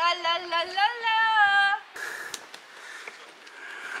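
A woman's voice sends out a long, high 'aah' into the stone tiers of an ancient theatre to test its acoustics. The note rises in pitch, is held steady for about a second and stops a little under two seconds in. Quieter outdoor noise with a few faint clicks follows.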